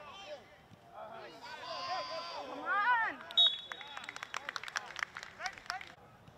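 Raised voices of soccer players and sideline spectators shouting during play, loudest about two seconds in. About halfway through comes a single sharp smack, followed by a quick, uneven patter of sharp taps.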